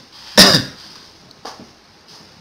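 A man clearing his throat with one sharp burst about half a second in, followed by a fainter, shorter one about a second later.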